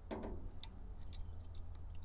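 Faint handling sounds as a fuel can and a backpack blower's engine housing are handled: a few light clicks over a low steady rumble.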